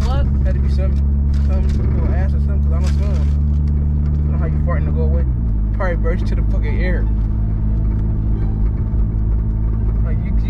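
Car engine and road noise droning steadily inside the cabin, dropping slightly in pitch about five seconds in, with voices talking over it.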